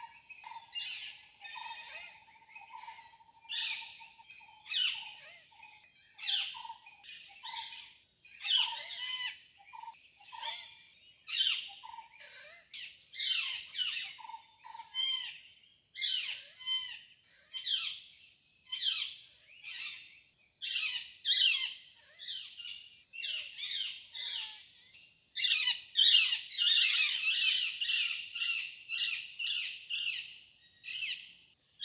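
Birds calling in a steady series of short, high squawks and chirps, about one a second, crowding into denser chatter near the end.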